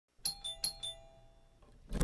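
Intro jingle of four quick, bell-like chime notes in a doorbell-style pattern, each ringing on and fading. A short thump comes right at the end.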